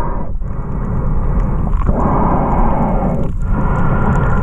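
Underwater camera picking up a loud, dense rumble of water moving around it, dipping briefly about every second and a half.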